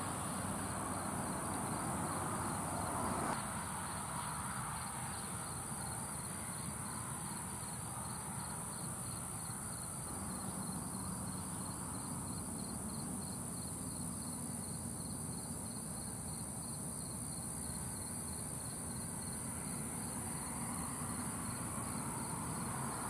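Steady high-pitched chorus of night insects, with a low, even background rumble underneath that eases slightly about three seconds in.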